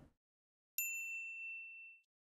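A single bright ding, a chime sound effect, coming in a little under a second in and ringing out over about a second.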